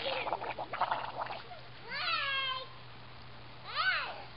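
A baby's high-pitched, meow-like vocal sounds: a long falling whine about two seconds in and a short rising-and-falling one near the end.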